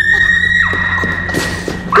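A person screaming in panic: a long, high-pitched shriek that breaks off under a second in, then another high shriek starting right at the end.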